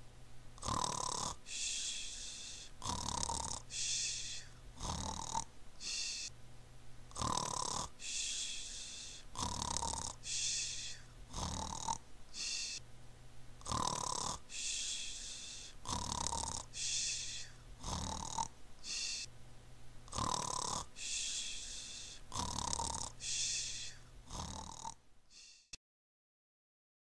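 Snoring: a rasping intake and a whistling outward breath, repeating about every two seconds. It stops shortly before the end.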